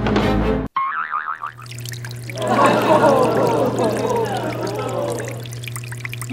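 A cartoon sound effect: a short wobbling boing about a second in, then water gushing and bubbling into a wooden rowing boat for a few seconds, over a steady low music hum. The water comes in through the hole left by the opened box, and the boat is starting to sink.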